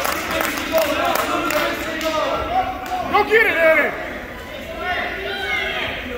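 Raised, indistinct voices of spectators and coaches shouting to the wrestlers, echoing in a gym. The loudest shouts come about three seconds in and again near the end.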